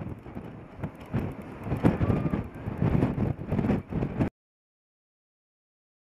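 THAAD interceptor missile's solid rocket motor at launch: a loud, crackling rumble that swells and ebbs, then cuts off suddenly about four seconds in.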